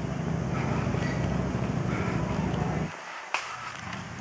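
Street ambience: a steady low rumble that drops off suddenly about three seconds in, followed by a single click.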